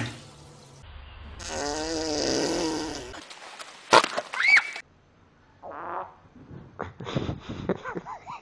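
Animal farts in quick succession: first a long, wavering buzzing fart lasting about two seconds, from an iguana. A sharp crack with a short rising-and-falling squeal follows about four seconds in, then several shorter fart bursts near the end.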